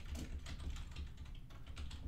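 Faint computer keyboard clicks, scattered and irregular, over a steady low electrical hum.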